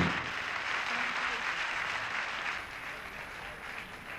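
A large theatre audience applauding, the applause slowly fading, just after an orchestral song ends at the very start.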